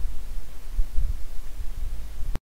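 Low background hum and hiss of a voice recording in a pause between sentences, with a steady low rumble that swells a little now and then.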